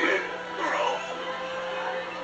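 A film soundtrack playing from a television's speakers: music with voices over it.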